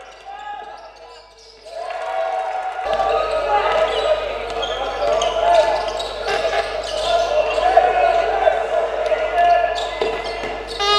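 Basketball game sound in a large hall: a ball bouncing on the hardwood court, with players' and spectators' voices. It gets louder about two to three seconds in, where the clip changes.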